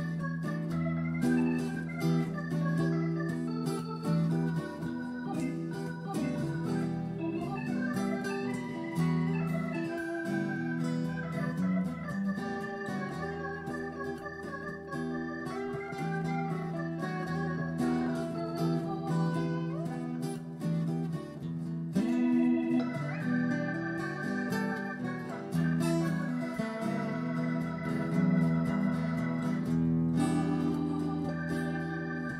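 Electronic wind instrument playing a held, gliding synth melody over acoustic guitar, live instrumental duo music.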